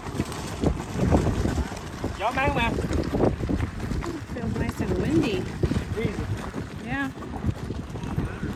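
Wheels of a pulled folding wagon and a towed cooler rumbling and crunching over a gravel path, with wind buffeting the microphone.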